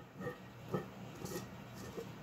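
Faint handling of a metal lid being fitted onto a glass jar to seal it, with a soft knock about three-quarters of a second in and a fainter one later.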